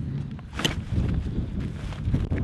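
Wind rumbling on the microphone, with rustling and handling noise as a camera backpack is taken off and put down, and one sharp click about a third of the way in.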